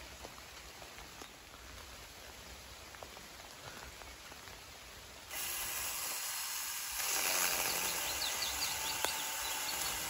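Rain falling on leaves and foliage: a soft steady patter at first, turning suddenly into a louder, brighter hiss of rain about five seconds in.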